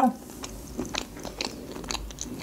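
A person chewing a mouthful of sushi roll close to the microphone, with small irregular wet clicks and light crunches.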